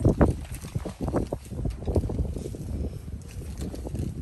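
Irregular light knocks and taps of small objects being handled on a tabletop, over a steady low rumble.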